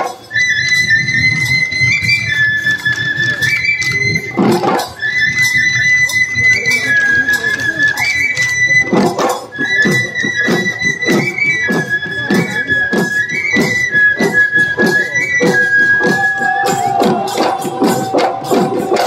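Bihu folk music: dhol drums beaten in a steady rhythm under a high, piping wind-instrument melody that steps back and forth between two or three notes. Near the end the piping stops and a lower held tone carries on over the drums.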